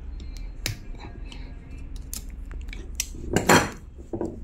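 Small metal parts clicking and clinking as a screwdriver works at the screw of a sewing-machine speed regulator's metal lever arm, with a louder scraping clatter about three and a half seconds in.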